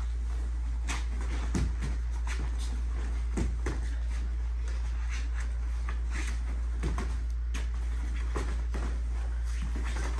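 Point-sparring in padded gear on foam mats: scattered dull thuds and scuffs of feet and padded strikes at irregular moments, over a steady low hum.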